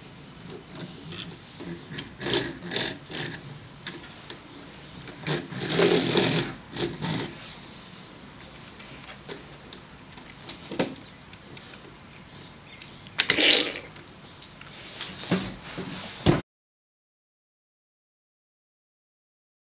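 A plastic Lego car being handled and moved about on a wooden tabletop: scattered scrapes, rattles and clicks, loudest about six seconds in and again near thirteen seconds. The sound cuts off to dead silence shortly before the end.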